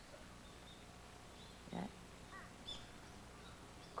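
Quiet background with a few faint, short, high bird chirps scattered through it, and one brief low voiced sound about two seconds in.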